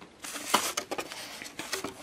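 Rustling and scuffing as a large burger is pried up out of its takeaway container, in irregular bursts with a few short clicks.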